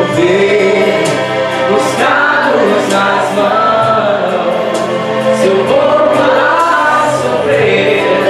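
A man singing a Portuguese gospel hymn into a handheld microphone, holding and bending long sung notes over steady instrumental accompaniment.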